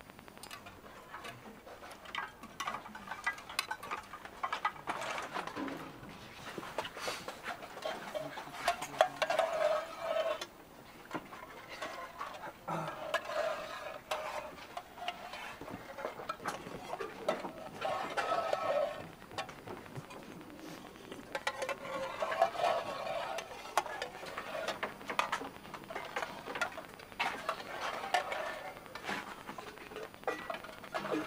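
Spoons and cutlery clinking against metal mess tins and dishes: a run of small, irregular clicks and clatter.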